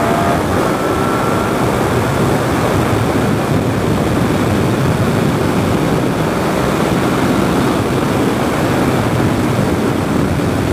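Suzuki SV650S motorcycle at speed: steady wind rush over the camera microphone, with the bike's V-twin engine note rising faintly under it in the first second or so before it is buried in the wind.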